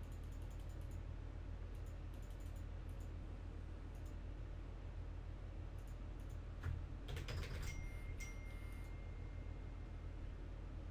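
Computer keyboard typing in short scattered runs of keystrokes, busiest about seven seconds in, over a steady low electrical hum. A faint steady high tone comes in near the end.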